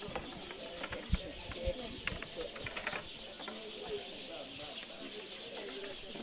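Outdoor background of faint, distant voices with birds calling. A few soft knocks come through, the loudest about a second in.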